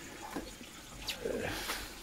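Water running steadily through a garden pond's homemade sieve filter box and its pipework into the tank below, with a couple of short faint knocks.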